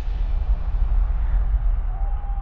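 Cinematic rumble sound effect accompanying an animated logo: a deep, loud, steady rumble with a hiss over it.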